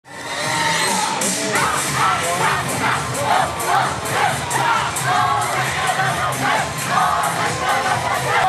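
Yosakoi dance music with a steady beat, overlaid by a chorus of shouted, chanted group voices.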